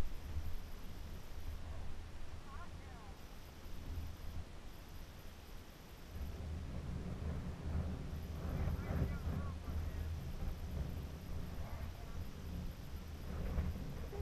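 Wind rumbling on a helmet camera microphone, with a dirt bike engine faintly in the background.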